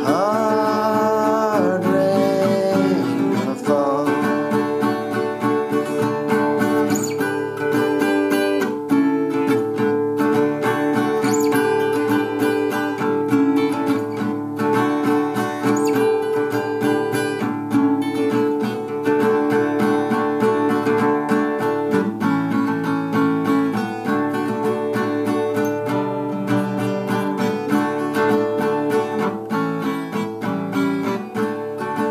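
Vintage Oscar Schmidt Stella acoustic guitar in drop D tuning, strummed in a steady rhythm as an instrumental break. A held sung note trails off in the first few seconds.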